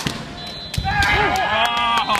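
A sharp knock at the start, then from about a second in a loud, drawn-out shout rising and falling in pitch, in a kendo bout on a wooden hall floor.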